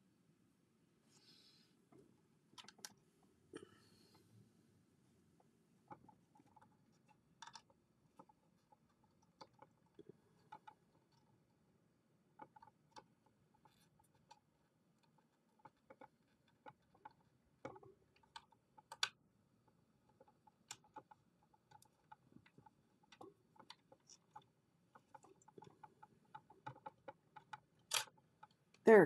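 Near silence broken by faint, irregular clicks and taps of fingers handling a phone or tablet held up at arm's length.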